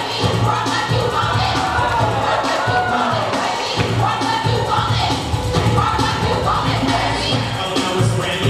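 Hip-hop music with a heavy bass beat played loud over a sound system, with a crowd cheering and shouting over it.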